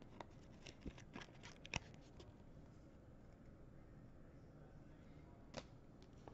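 Near silence, with a few faint clicks and rustles of trading cards and pack wrappers being handled in the first two seconds and one more near the end.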